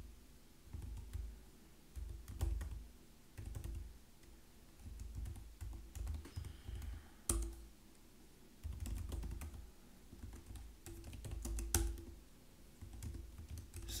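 Typing on a computer keyboard: irregular bursts of keystrokes with short pauses between them.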